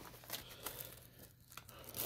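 Faint crinkling and tearing of plastic shrink wrap being handled and pulled off a small boxed product, with scattered small crackles.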